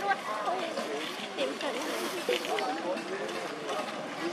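Several people talking at once in the background, the voices overlapping and not close to the microphone.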